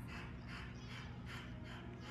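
A bully-breed dog breathing quickly and evenly, faint soft breaths about two to three a second, over a faint steady low hum.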